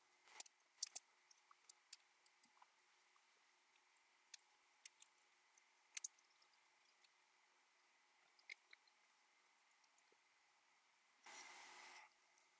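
Near silence with a few faint, sharp clicks and ticks as fingers handle a micro quadcopter's small plastic parts, motor mounts and wire leads. A short soft hiss comes near the end.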